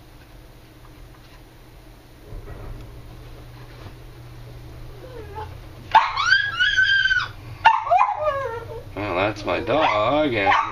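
A low, steady hum comes in a couple of seconds in, which fits a garage door opener running. From about six seconds in a dog gives a long, high whine, then a run of shorter, wavering cries.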